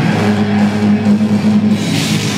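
Live death metal band: heavily distorted, low-tuned electric guitars and bass holding one sustained chord, with no drums or cymbals.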